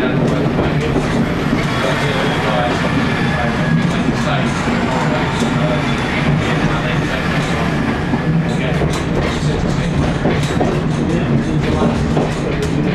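British Rail Class 121 diesel railcar running, heard from inside its driving cab: a steady diesel engine note with the wheels clacking over rail joints and pointwork.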